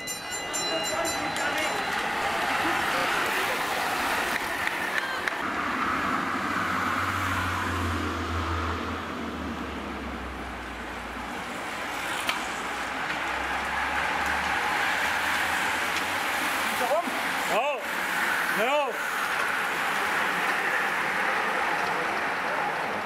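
Roadside ambience of a bicycle race: the rushing noise of a group of road bikes passing, with spectators' voices and a low motor hum in the middle. Two short shouts come late on.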